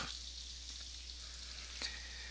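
Faint steady hiss with a low, steady hum: the background noise of a desk microphone recording, with one faint click near the end.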